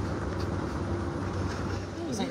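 Vehicle engine idling: a steady low rumble.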